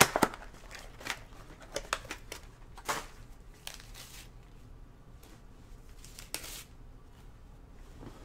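Handling noise of trading cards and their packaging on a desk: a sharp clatter at the start, then scattered clicks and crinkling rustles for a few seconds. After that there is faint room noise, with one more brief rustle near the end.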